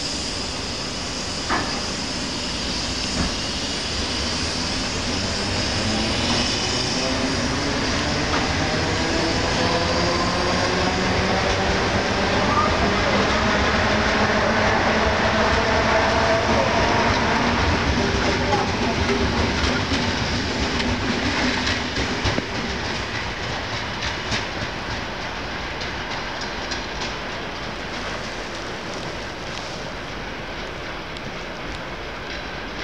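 ER2T electric multiple unit pulling away and accelerating past, its traction motors whining and rising in pitch as it gathers speed, loudest as the cars go by. After that the wheels click over rail joints as the train draws away and fades.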